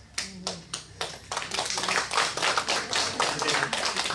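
Audience applauding: a few scattered claps, then many people clapping together from about a second in, fading just at the end.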